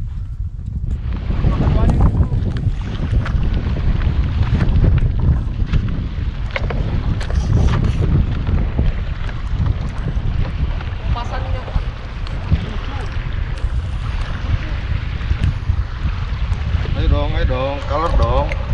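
Wind buffeting the microphone on a small open boat at sea, a steady low rumble over the sound of the sea. Brief voice sounds come about eleven seconds in and again near the end.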